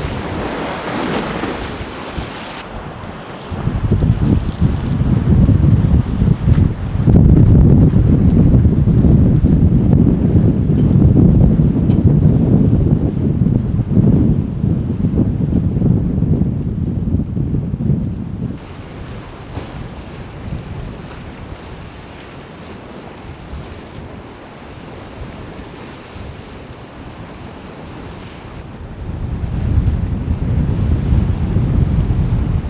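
Choppy lake waves splashing and washing against a dock at first, then strong gusts of wind buffeting the microphone as a loud low rumble. The wind eases to a quieter rumble after about 18 seconds and picks up again near the end.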